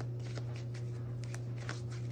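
A tarot deck being shuffled in the hands: a quick, irregular run of soft card snaps and slides, over a steady low hum.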